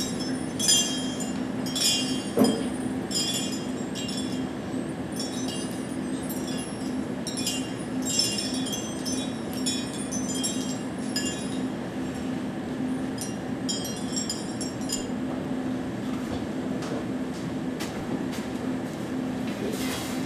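Light clinking of glass, scattered clinks for about fifteen seconds before dying away, over a steady low electrical hum.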